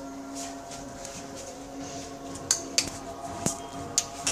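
A steady background hum with four sharp clicks or clinks in the second half.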